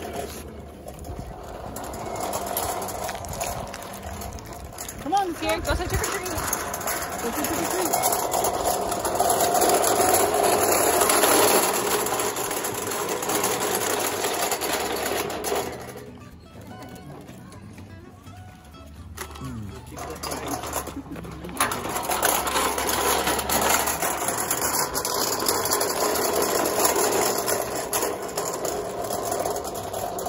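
Small metal toy wagon rattling as a child pulls it over a concrete sidewalk and brick pavers, with a quieter stretch about halfway through.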